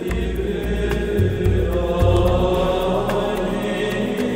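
Background music of sustained tones over a low bass line, with a few light percussive ticks.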